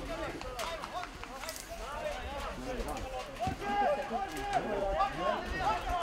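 Several men's voices shouting and calling out across an open football pitch during play, overlapping one another, with no clear words.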